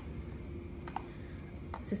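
Hands quietly rubbing a thick body cream into the skin, soft and faint over a low room hum, with a couple of faint clicks.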